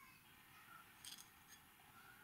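Near silence: room tone with a couple of faint, brief clicks about a second in, as seeds are nudged into a soil furrow with a pencil tip.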